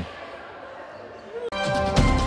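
Faint sports-hall background for about a second and a half, then the news programme's theme music cuts in suddenly and loudly over its graphic transition.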